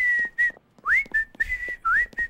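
A person whistling a light tune: short phrases on one high note, several of them starting with a quick upward slide.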